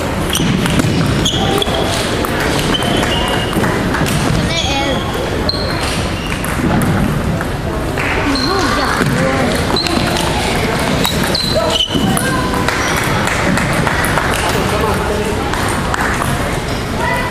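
Table tennis rally: the ball clicks sharply off bats and table at irregular intervals, over a steady chatter of voices in the hall.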